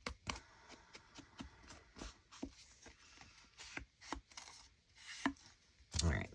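Ink blending tool dabbed again and again on the edges of a paper pocket: soft, irregular taps, a few a second.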